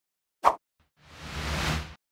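Editing sound effects on a news channel's end card: a short pop about half a second in, then a whoosh that swells and then stops just before the end.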